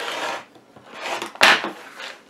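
Rasping, rubbing strokes of a rotary cutter and acrylic quilting ruler working fabric on a cutting mat: one rasp at the start, then a second, sharper one about one and a half seconds in.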